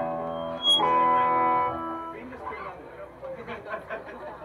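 Electric guitar chord ringing through the amplifier, with a louder chord struck about a second in. The chords stop sharply just after two seconds, leaving room chatter.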